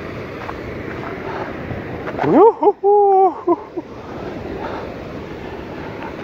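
Wind rushing over a body-worn microphone, a steady noise. About two seconds in, a short wordless vocal exclamation rises in pitch and is held for about a second.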